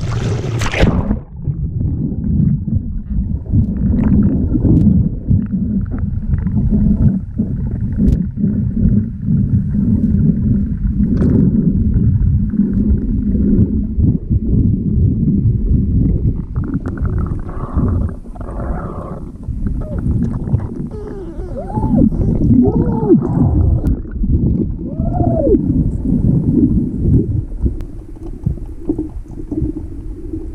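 Underwater sound of a swimmer and the water around a handheld camera: a splash as it goes under, then a dense, muffled low rumble of moving water with bubbling and short warbling sounds in the second half.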